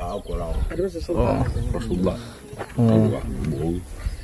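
A man talking in a low, drawn-out voice, with no other sound standing out.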